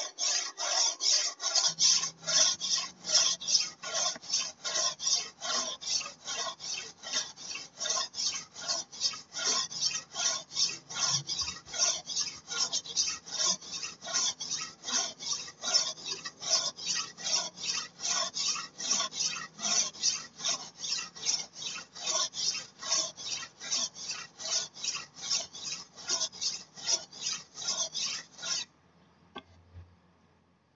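Golok (machete) blade being stroked back and forth on a whetstone in an even rhythm of about two to three rasping strokes a second, which stop shortly before the end. This is the grinding stage that thins and evens the edge before the switch to a finer stone.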